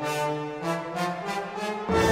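Orchestral brass section, trumpets and trombones, playing a run of short detached notes with little bass beneath. Just before the end the full orchestra comes in, suddenly louder and with strong low notes.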